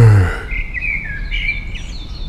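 A long sighing voice that falls in pitch and ends just after the start, then birds chirping in short, high whistled notes from about half a second in.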